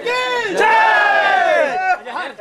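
A loud, drawn-out shout held for more than a second, its pitch falling toward the end.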